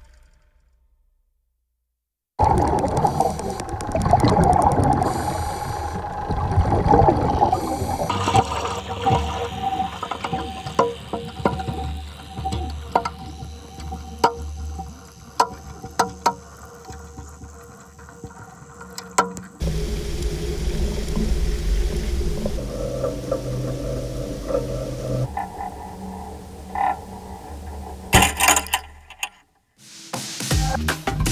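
Underwater-style sound design: a low rumble under held drone tones, with water and bubbling sounds and scattered sharp clicks and creaks. It begins after about two seconds of silence, changes to a lower, steadier drone about two-thirds of the way through, and cuts off just before the end.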